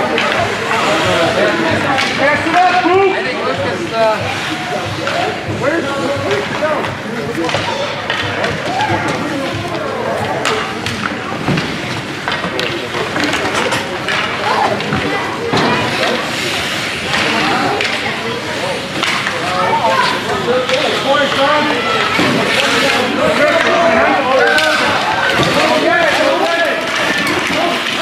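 Ice hockey game: overlapping shouts and chatter from spectators, with sharp clacks of sticks and puck on the ice throughout.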